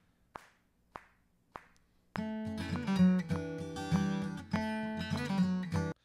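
A software count-in of evenly spaced hand claps, one beat apart, then a guitar scratch track strumming the song from about two seconds in, cut off suddenly when playback stops.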